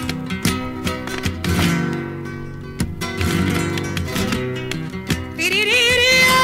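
Flamenco guitar playing the introduction to a romera, strummed chords with sharp percussive strokes. Near the end a woman's voice comes in on a long held note with vibrato.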